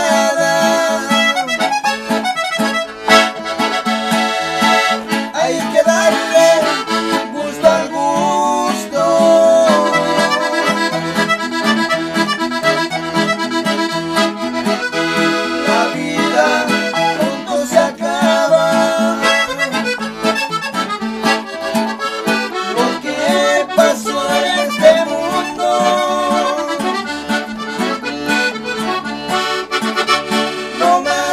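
Hohner piano accordion carrying the melody over a strummed acoustic guitar in a steady norteño ranchera rhythm, with two men singing together in part.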